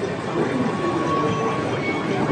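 Tomorrowland Transit Authority PeopleMover cars running along the overhead track with a rolling rumble. A thin steady whine is heard from about half a second in to about one and a half seconds.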